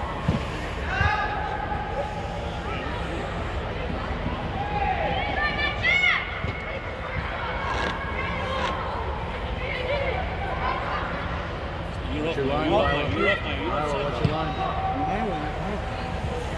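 Scattered shouts from players and spectators echoing in a large indoor sports dome, over a steady low rumble, with a few sharp thumps.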